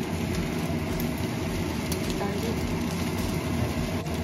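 Fried rice with cabbage and corn sizzling in a frying pan while a wooden spatula stirs and turns it, over a steady low rumble.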